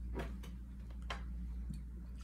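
Two faint clicks about a second apart over a steady low hum.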